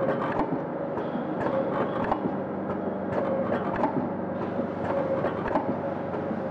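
ZV-320D powder packing machine running: a steady hum with repeated clicks and clatter from its mechanism, about two a second.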